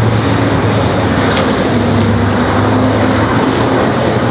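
A motor runs steadily with a low hum, with one sharp click about a second and a half in.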